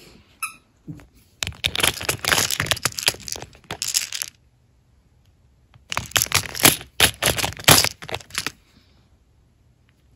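Small clear plastic storage boxes clattering and clicking as they are handled and lifted out of their tray, with the small resin charms inside rattling. The clatter comes in two bursts of a few seconds each, with a pause between them.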